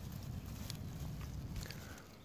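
Faint rustling and a few soft crackles of dry grass stems and leaves as a hand moves them aside, over a low steady rumble on the microphone.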